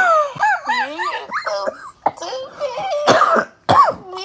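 A man laughing hard and loudly, breaking into a couple of short coughs near the end.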